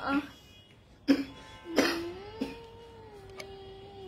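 A woman coughs twice, under a second apart, then holds one long, steady hum.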